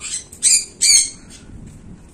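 A bird giving three harsh, squawking calls in quick succession within the first second.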